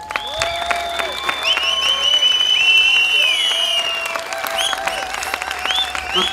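Audience applauding, with whistles over it: long held whistles lasting a second or more, then several short rising whistles near the end.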